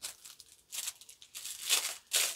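Packaging wrapping crinkling and rustling as a parcel is handled, in three short bursts, the loudest near the end.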